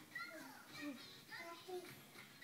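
High-pitched child voices speaking in short, lively phrases, with no music in this stretch.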